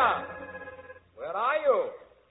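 A music cue ends, then a person gives a wordless vocal cry about a second in, its pitch rising and falling.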